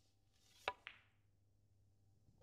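Snooker cue tip striking the cue ball, then the cue ball hitting the black: two sharp clicks about a fifth of a second apart, the first the louder. The shot is a soft screw-back played with heavy side.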